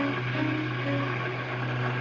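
A quiet passage of live music for violin and bass clarinet: a steady low drone with a few soft, short bowed violin notes over it in the first second.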